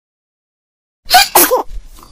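Two quick sneezes, "achoo, achoo", from a person acting out the sneezes of a teddy bear with a cold, starting about a second in.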